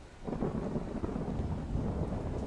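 A deep rumble swells up suddenly about a quarter of a second in and keeps rolling, much like thunder.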